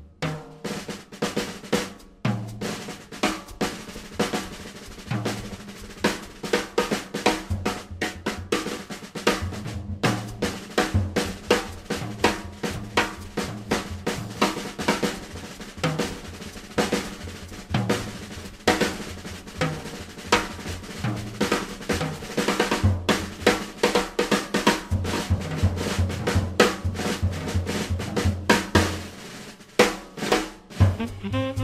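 A jazz drum kit plays a busy passage of snare and bass-drum strokes, with a low bass line moving underneath. No saxophone is prominent.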